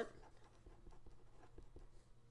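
Pen writing on paper: faint scratching strokes as a few symbols are written.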